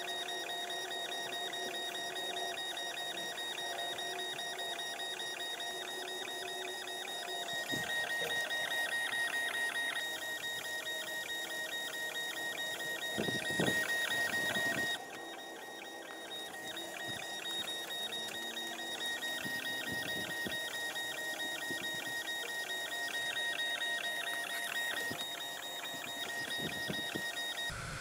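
Longer Ray5 10-watt diode laser engraver running a raster engrave: its stepper motors give a steady high whine and a fast, even buzzing chatter as the head sweeps back and forth across an anodized aluminum card. The sound dips and changes briefly about halfway through.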